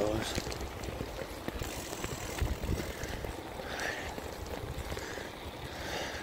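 Wind buffeting a phone's microphone on the move outdoors: an irregular low rumble over a steady hiss.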